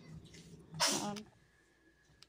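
A child sneezes once, a short sharp burst about a second in.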